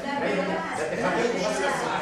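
Speech only: people talking in a conversation.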